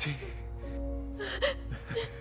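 Soft film score of held notes under a woman's tearful gasping breaths, a few short gasps across the moment.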